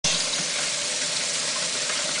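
Kitchen tap running steadily, its stream splashing into a stainless-steel sink holding dishes.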